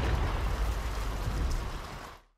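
Steady hiss of heavy rain over a low rumble, slowly fading down and cutting off just after the end.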